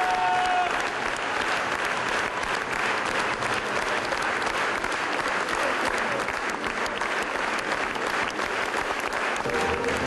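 A large theatre audience applauding steadily after music stops. A held musical note fades out just after the start, and music starts again near the end.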